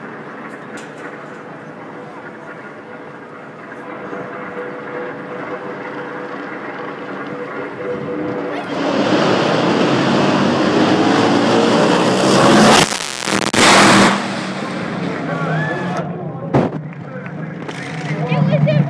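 Top fuel dragsters' supercharged nitromethane V8 engines making a full-throttle run: the noise builds, bursts out suddenly about nine seconds in, grows very loud and overloads the microphone around thirteen to fourteen seconds as the cars pass, then falls away.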